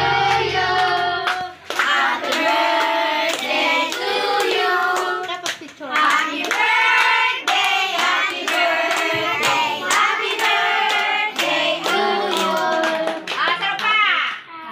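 A group of adults and children singing a birthday song together, with hand clapping in time throughout.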